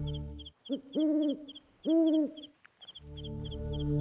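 An owl hooting twice, about a second apart, over a steady high chirping of about three chirps a second: a night-time ambience effect. Background music fades out at the start and comes back in near the end.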